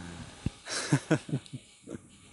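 A short burst of men's laughter: a few breathy chuckles starting about a second in, with a single click just before it.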